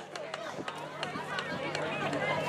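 Crowd of waiting passengers talking among themselves, several voices overlapping, with a steady low hum underneath.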